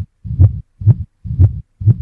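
Pop song intro: deep, evenly spaced thumps, about two a second with silence between them, like a heartbeat.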